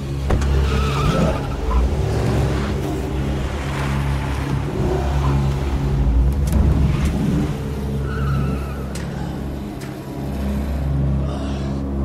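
Car engine running hard, with two short tire squeals, about a second in and again near the end.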